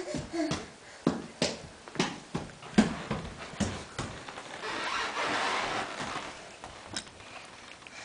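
Light knocks and pats on a hardwood floor, about two a second for the first four seconds, then a couple of seconds of rustling and one more knock near the end.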